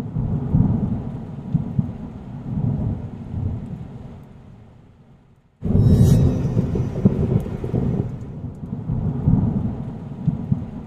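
Thunderstorm sound effect: a low rolling thunder rumble fades away over about five seconds, then a sudden loud thunder crack a little past halfway, followed by more rumbling.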